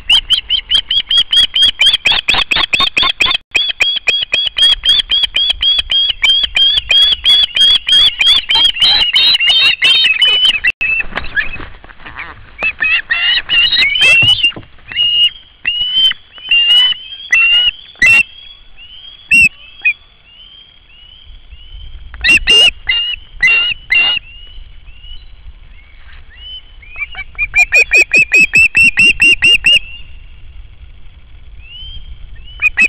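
Juvenile osprey calling: a fast run of high, sharp chirps, several a second, for about the first ten seconds, then scattered single calls, then another fast run near the end. The insistent chirping is typical of a young osprey begging for food.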